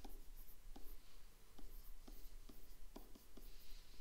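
Stylus writing on a tablet screen: faint, irregular light taps and scratches as handwritten numbers and symbols are drawn, about two ticks a second.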